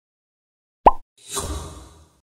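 Logo-intro sound effects: a short sharp pop with a quick rising pitch a little under a second in, followed by a rushing swell that fades away.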